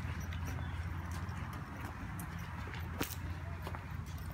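A toddler's quick, light footsteps on brick pavers: a run of small irregular taps, with one sharper tap about three seconds in, over a steady low rumble.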